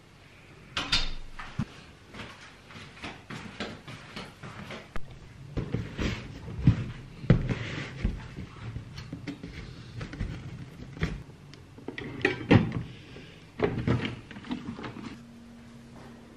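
Household handling sounds in a small room: an apartment door being opened and closed, then a cardboard parcel being set down and handled, heard as a string of irregular knocks, clicks and rustles. A low steady hum begins near the end.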